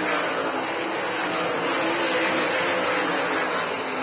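Winged dirt-track sprint cars' V8 engines running hard at racing speed, a dense, steady engine noise from several cars at once.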